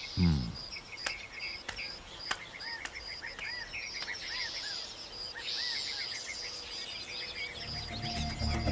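Forest ambience: insects trilling in a steady, pulsing high chorus, with repeated short arched chirping calls and a denser insect buzz about five and a half seconds in. Film score music comes in near the end.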